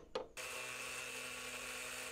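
Cordless angle grinder cutting down a screw that sticks up from a timber door sill and blocks the door's lock. After two short clicks it starts about a third of a second in and runs steadily.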